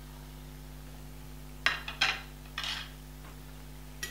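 A few short clinks and scrapes of a metal utensil against a steel karahi, clustered about two seconds in, over a steady low hum.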